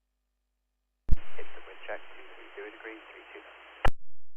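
Air traffic control radio transmission on the airband receiver: a sharp click as the squelch opens about a second in, then under three seconds of narrow, hissy radio audio with a faint, unintelligible voice, closing with another sharp click near the end.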